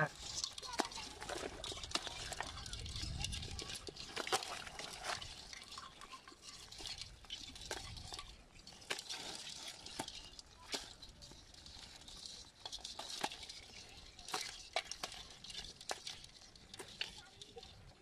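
Live crabs scrabbling in a basin, their legs and shells making irregular clicks and scratches against its sides, with light splashing in the shallow water at the bottom.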